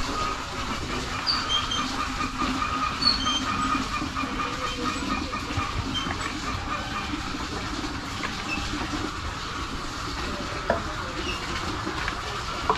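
A steady, even mechanical drone, like a distant motor running, with a few short high chirps scattered over it.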